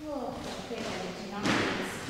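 A woman's voice, with a short loud burst of noise about one and a half seconds in.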